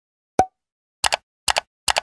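Pop and click sound effects for an animated end screen's buttons appearing: a single plop about half a second in, then three quick double clicks at an even pace.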